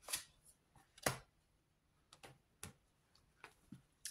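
Oracle cards being drawn from a fanned deck and laid down: a few faint, sharp card clicks and snaps, the two loudest near the start and about a second in, then several softer ones.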